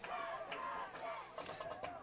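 Faint stadium crowd noise: many distant voices talking and calling at once, with no single nearby voice standing out.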